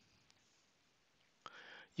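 Near silence: faint room tone, with a soft click and a brief intake of breath near the end.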